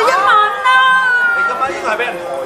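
Guests' voices shouting and whooping without words, with one long, high, drawn-out cheer, egging the groom on as he downs a glass of beer.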